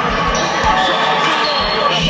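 Basketball game sound in a gym: a ball being dribbled on a hardwood court, low thumps about twice a second, over crowd chatter.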